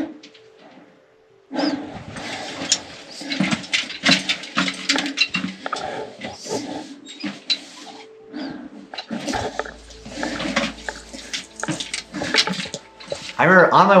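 Dense scuffs, knocks and scrapes of someone clambering over rock in a mine tunnel, close to a body-worn camera microphone, with vocal sounds mixed in. They start suddenly about a second and a half in, after a brief near-quiet gap.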